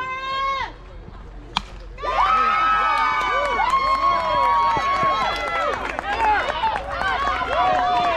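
A single sharp crack of a softball bat meeting the ball about a second and a half in. Right after it comes a burst of many voices, players and spectators, yelling and cheering a run-scoring hit.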